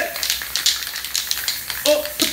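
Aerosol spray-paint can hissing in a run of short bursts as yellow paint is sprayed onto the canvas.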